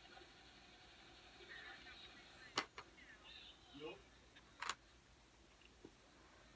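Very faint voices played through a laptop's speakers, with two sharp clicks about two seconds apart in the middle.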